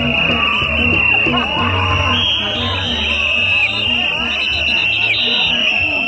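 Gagá band playing loud festival music: a repeating low rhythmic pulse, with long high-pitched notes held over it, each bending down in pitch at its end.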